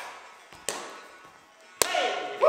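Two sharp thuds of dancers' feet landing and stamping on a wooden floor, about a second apart, the second louder, with a short echo from the hall. Faint music plays underneath.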